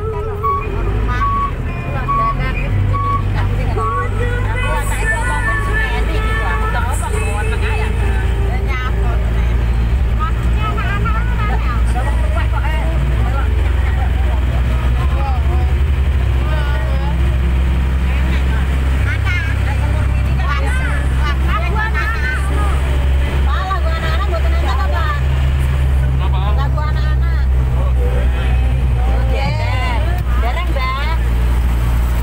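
Engine of a sepor mini (a mini road train) running steadily under way, heard from among the passengers as a constant low rumble with voices over it. An electronic beep repeats about every half second for the first several seconds.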